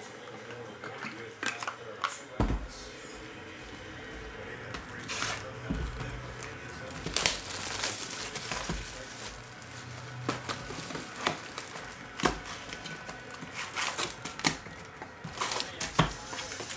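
Clear plastic shrink-wrap crinkling as it is peeled off a cardboard trading-card box, then foil card packs rustling and clicking as they are pulled out of the box. Scattered sharp clicks and taps run through a fairly quiet rustle.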